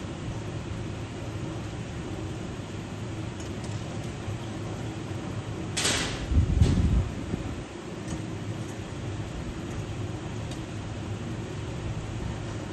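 Steady low mechanical drone in a glassblowing studio. About six seconds in comes a short hissing rush, followed by a low rumble lasting about a second.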